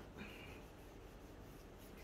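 Faint rubbing and scuffing of a tissue wiped across the work mat by a gloved hand, briefest and clearest just after the start, then only low room hiss.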